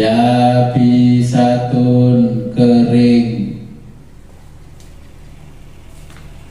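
A man's voice chanting Arabic recitation in long, level held notes with brief breaks. It stops about three and a half seconds in, leaving a low steady hum.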